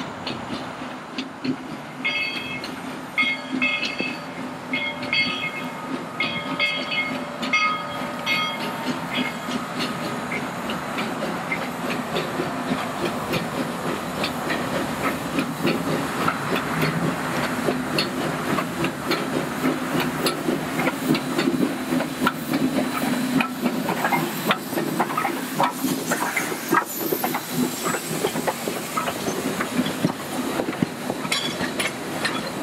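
A Baldwin 2-6-6-2T Mallet steam locomotive, Skookum, pulling out with a passenger train: steady steam hiss and working noise, with a bell ringing about once a second for the first several seconds. Later, the wheels click over the rail joints as the train rolls by.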